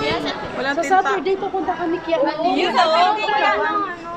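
Chatter: several people talking at once.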